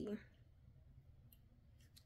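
Quiet handling of a plastic fashion doll while a small plastic purse is fitted onto its hand, with one faint sharp click a little past halfway.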